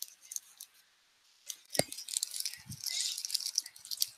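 Irregular rustling and crackling with scattered clicks, and one sharp click about two seconds in.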